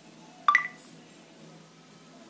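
Poco F1 smartphone's brief electronic unlock tone about half a second in, a quick two-note beep stepping up in pitch, as the lock-screen pattern is completed and the phone unlocks.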